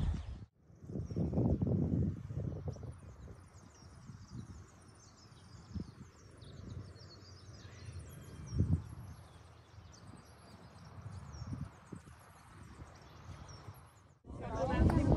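Outdoor spring ambience with many small birds chirping and singing throughout. Irregular low rumbles and bumps, like wind or handling on the microphone, are loudest about a second in and again near nine seconds.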